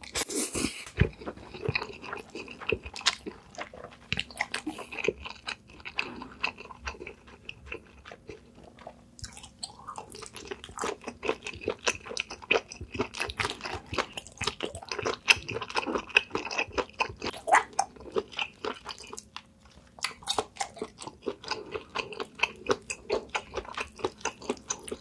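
Close-miked chewing of a mouthful of black bean noodles: a dense run of small wet clicks and squelches from the mouth, following a short slurp at the start as the noodles go in. There is a brief lull near the end.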